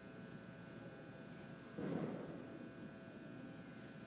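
Faint room tone with a steady low electrical hum, broken by one brief muffled knock or rustle about two seconds in.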